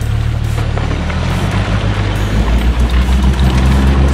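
Toyota Land Cruiser 80 series driving through an iced-over stream: engine running with ice and water crunching and splashing under the tyres, growing louder as it nears in the second half, with music underneath.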